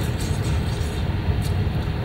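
A steady low rumble with no speech, with a couple of faint short clicks.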